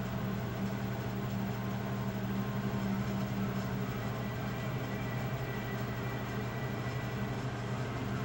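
A steady low hum of two constant pitches, holding level without any sudden events.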